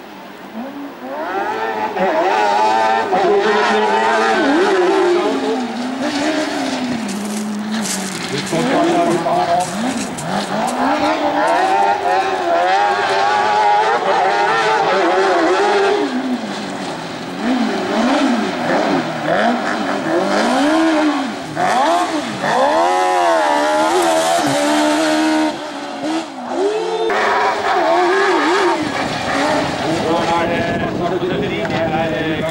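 Small race car engines revving hard, the pitch climbing and dropping again and again as the cars shift and lift through the corners of a loose gravel course. The engine comes in loud about a second in and dips briefly near the end.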